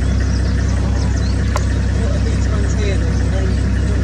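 A vehicle engine idling with a steady low rumble, with short high bird chirps above it and one sharp click about a second and a half in.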